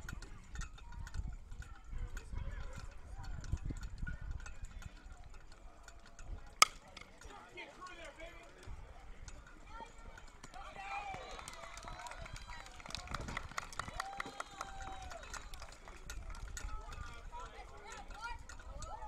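Spectators' voices at a youth baseball game, with one sharp crack of a bat hitting the ball a little past six seconds in. The voices then rise into cheering and shouting for several seconds.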